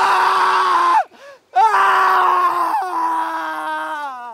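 A young man screaming in anguish: one long cry, a brief catch of breath, then a second long cry whose pitch slowly sinks as it trails off.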